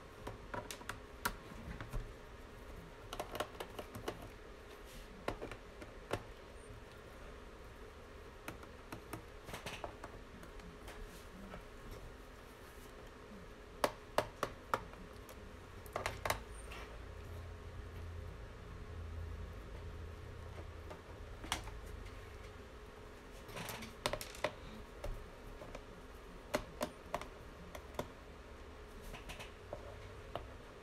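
Screwdriver working the small screws out of a laptop's plastic bottom case: light, irregular clicks and taps in small clusters, with pauses between them.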